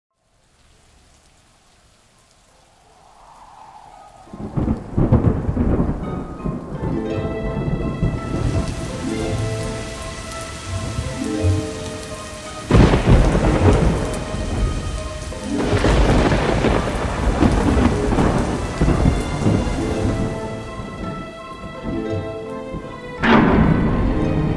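Thunderstorm: steady rain with rolling thunder, building up from faint over the first few seconds, with four loud claps of thunder spread through it, the last near the end. Sustained musical tones run beneath the storm.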